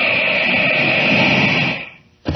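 Radio-drama sound effect of rushing air for a leap from a window: a steady whoosh that swells in, holds and fades away near the end.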